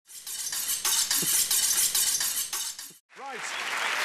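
Studio audience applauding, a dense stream of claps that cuts off abruptly about three seconds in and resumes a moment later under a man's voice.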